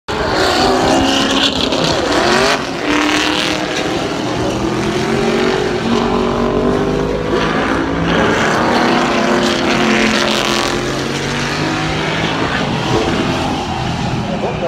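Historic race car engines running hard through the Corkscrew corner, their pitch repeatedly rising and falling as the cars slow and accelerate.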